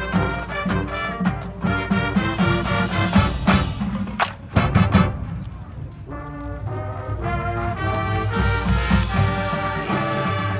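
Marching band playing its field show: brass chords over drums and mallet percussion. A few sharp drum hits come about halfway through, then the music drops to a softer passage and builds again.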